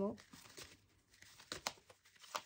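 Tarot cards being handled and spread out across a wooden table: faint sliding with a few sharp card clicks, most of them about one and a half seconds in.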